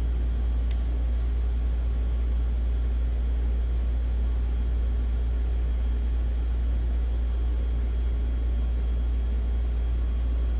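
A steady low rumble that holds level throughout, with a single faint click about a second in.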